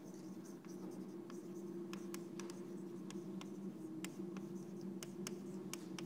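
Chalk writing on a blackboard: a string of short taps and scratching strokes as letters are written. A steady low hum runs underneath the writing.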